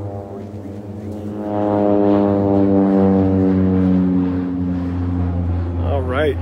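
A long, horn-like tone that swells about a second and a half in, sinks slightly in pitch as it holds, and fades near the end, over a steady low hum.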